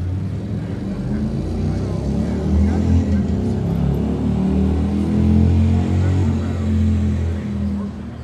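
A heavy engine running with a low rumble, rising and falling slightly in level; it starts suddenly and stops suddenly.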